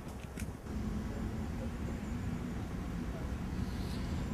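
Steady low rumble of outdoor background noise with a faint steady hum through the middle.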